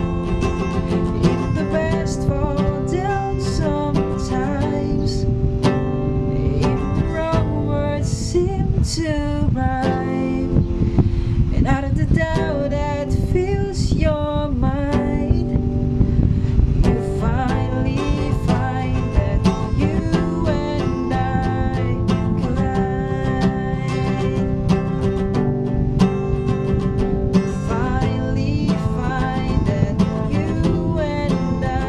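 Acoustic guitar strummed in a steady chord pattern, playing a cover of a pop song.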